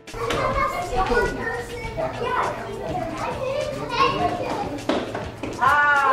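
A group of girls' voices chattering and calling out over one another, with a few sharp clicks along the way. The voices get louder and higher near the end.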